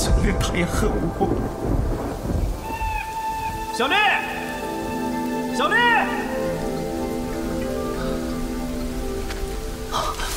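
Rain falling with a low roll of thunder over the first couple of seconds, then held music tones under the rain. A voice calls out twice, about four and six seconds in.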